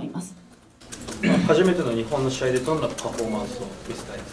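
A man speaking, most likely Japanese that the transcript left out. A brief quieter moment near the start is broken off by an abrupt cut.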